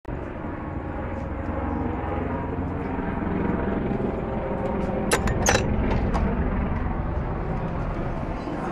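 Steady low rumble of outdoor urban background noise, with a few sharp clicks about five seconds in.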